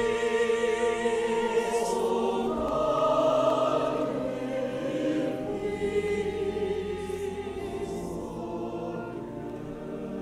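Mixed church choir of men and women singing, holding sustained chords in a reverberant sanctuary, growing quieter over the last few seconds.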